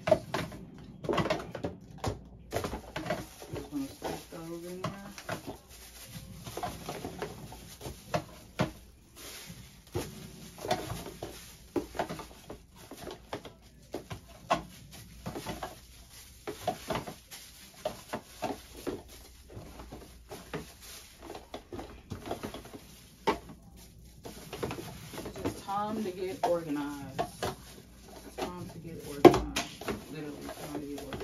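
Four-ounce plastic containers clicking and knocking against each other and against clear plastic storage bins and drawers as they are packed away by hand, in many short, irregular knocks, with plastic bags rustling.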